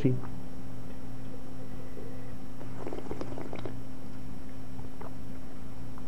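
Steady low hum in the background, with a man's faint, brief murmur about three seconds in.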